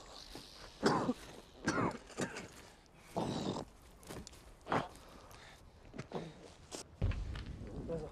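Film soundtrack, playing quietly: men's short grunts and strained breaths, one every second or so, over faint scuffing and rustling, with a low rumble near the end.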